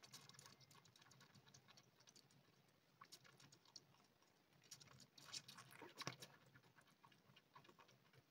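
Faint, irregular wet clicks and smacks of a kitten suckling milk from a feeding bottle's teat, busiest about five to six seconds in.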